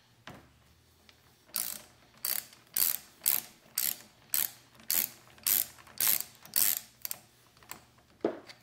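Hand ratchet and socket clicking in short runs, about two strokes a second, as a bolt at the handlebar end is tightened.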